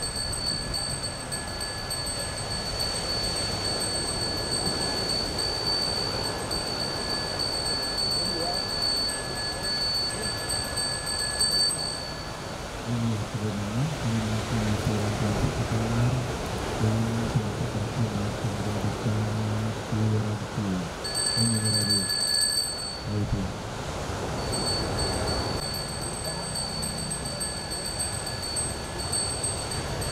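A Balinese priest's hand bell (genta) ringing continuously in a steady high shimmer, dropping out for several seconds in the middle, while a low voice chants in held notes with short breaks over that middle stretch. A steady murmur of a large gathering lies underneath.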